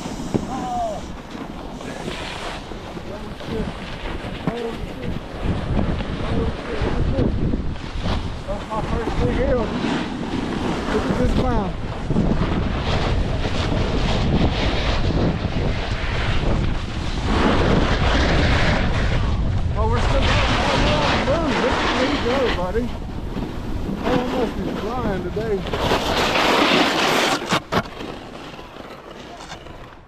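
Wind rushing over an action-camera microphone during a downhill snowboard run, with the board sliding and scraping over packed snow. It eases off near the end as the rider slows.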